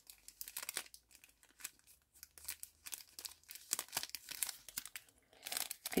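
Clear plastic packaging sleeve crinkling and rustling in the hands as a magnet card is worked back into it, in irregular short crackles.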